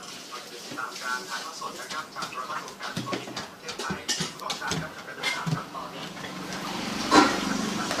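A pet dog vocalizing amid scuffling and clicking movement sounds and faint voices, with a louder voiced sound about seven seconds in.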